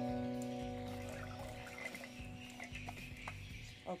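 Background music: a held chord that fades away over the first two to three seconds, leaving a few faint, light clicks.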